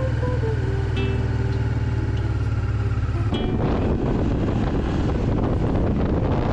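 Honda Africa Twin RD04's V-twin engine running steadily while the bike is ridden. About three seconds in the sound turns rougher and noisier, with wind buffeting the microphone.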